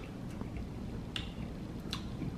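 A man chewing a mouthful of pancake, with three or four short light clicks of a metal fork on a plate.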